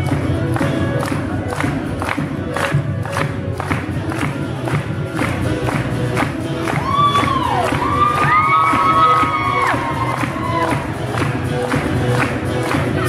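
Acoustic guitar strummed in a steady rhythm at a live show, with the audience cheering over it. Sustained high-pitched screams rise above the cheering about seven to ten seconds in.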